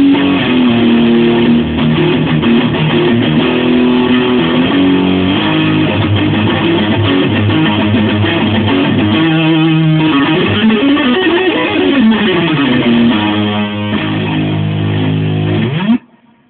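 Electric guitar played fast and loud, notes changing quickly with slides up and down in pitch around the middle, in an attempt at sweep picking. It stops abruptly at the end.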